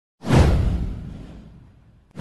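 Whoosh sound effect with a deep rumble underneath: one sudden swoosh about a quarter second in that sweeps down in pitch and fades away over about a second and a half.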